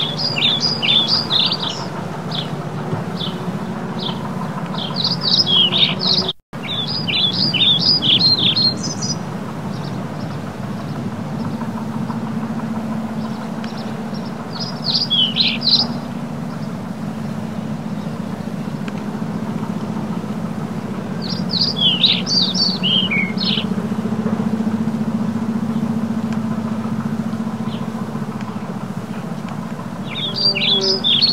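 Small birds chirping in quick, high twittering bursts, about four bursts spread through, over a steady low rumble. The sound drops out for an instant about six seconds in.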